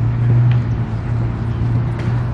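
Steady low hum of a motor vehicle engine over a broad rush of outdoor traffic noise.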